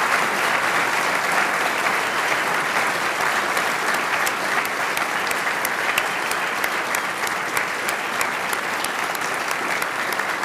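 Audience applause, a large crowd clapping steadily, with individual sharp claps standing out more in the second half.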